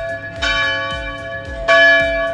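Large church bell, rung by its rope, tolling with two strikes a little over a second apart, the second one louder. Each strike rings on as a cluster of steady tones.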